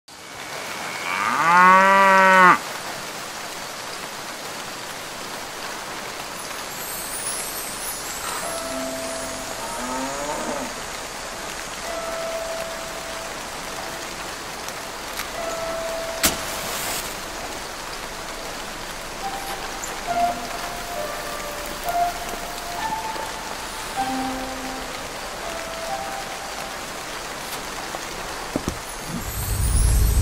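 A cow moos once, loud and wavering, about a second in. A steady soft hiss follows, with scattered faint short tones and a single sharp click about sixteen seconds in, and deeper music comes in near the end.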